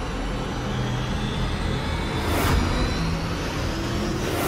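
Dramatic TV-serial background score: a low rumbling drone with held low tones and a short whoosh about two and a half seconds in.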